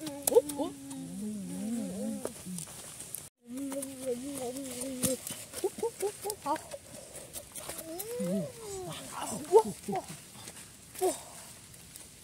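Wordless human vocalizing: held, wavering hummed tones and short sliding vocal glides, with scattered light clicks. The sound drops out completely for a moment about three seconds in.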